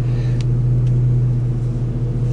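The V8 engine of a Ford Mustang Mach 1 idling steadily, a constant low hum heard from inside the car's cabin.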